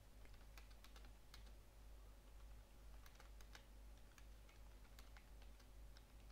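Faint computer keyboard typing: irregular runs of keystrokes with short pauses between them, over a steady low hum.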